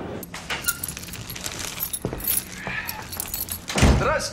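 Keys jangling and clicking in the front-door lock as the door is unlocked and opened, with a loud thud near the end.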